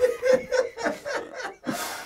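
A person breaking into laughter, in short pitched bursts about four a second, with a breathy gasp of air near the end.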